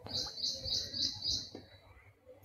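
A bird calling: a quick run of about five high chirps, evenly spaced, fading out about a second and a half in.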